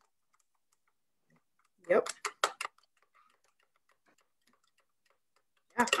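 A spoon clinking against a cup while stirring hot chocolate mix into hot water: a quick run of clinks about two seconds in, then faint scattered ticks.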